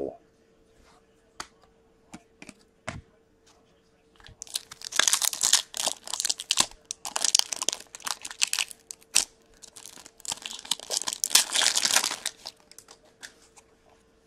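Hands tearing open a hockey card pack: a few light clicks at first, then bursts of wrapper crinkling and tearing from about four seconds in, and again from about ten to twelve seconds.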